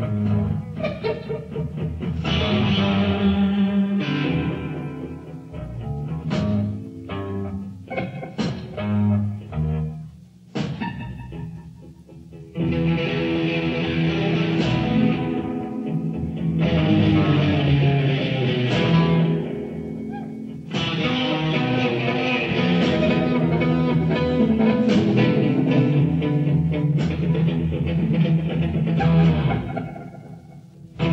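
Live psychedelic rock band playing an instrumental, led by a Fender Stratocaster electric guitar over bass and drums. The music thins to a quieter passage about ten seconds in, then the full band comes back loud a couple of seconds later and drops away again near the end.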